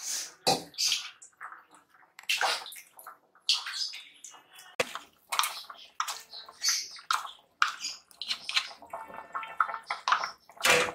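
Thin curry sloshing and splashing in a pot as ground coconut paste is added and stirred in, in irregular short wet bursts with one sharp clink about halfway through.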